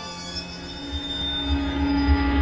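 Cinematic sound-design swell: a dense cluster of sustained ringing, squeal-like tones over a low rumble, growing steadily louder.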